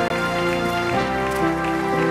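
Soft background keyboard music of held chords, moving to a new chord about once a second.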